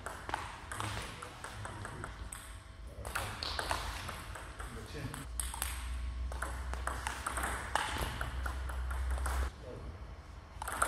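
Table tennis rallies: the plastic ball clicking sharply off rubber paddles and bouncing on the table in quick repeated hits, with voices in the hall. A low hum runs under the play for several seconds in the second half.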